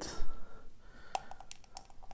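Small hard plastic toy parts (the black shoe pieces of a miniature Mrs Potato Head figure) clicking and tapping as they are handled and pressed together: a handful of light clicks, the sharpest a little past halfway.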